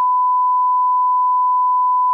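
Test tone that goes with a colour-bar test card: a single steady beep held at one pitch.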